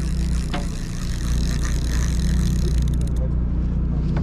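Sportfishing boat's engine running with a steady low drone, under a hiss of wind and water.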